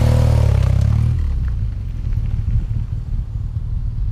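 2011 BMW R1200GS boxer twin passing close by under way, loudest in the first second with its pitch falling as it goes past, then settling to a quieter, lower rumble as it pulls away.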